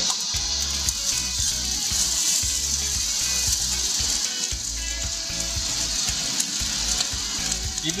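Sliced vegetables and shiitake mushrooms going into hot oil in a wok, sizzling steadily as a spatula scrapes them off the plate.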